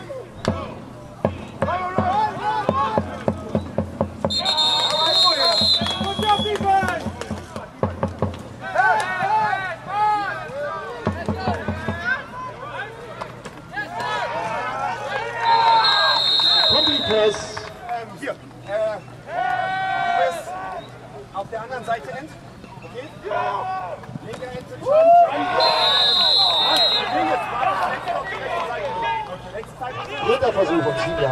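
Shouting and chatter from players, coaches and spectators on a football sideline, with a referee's whistle blown three times, each for a second or two.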